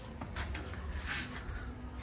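Faint rustling and shuffling of a person climbing onto a parked motorcycle, with a few soft swishes over a low steady hum.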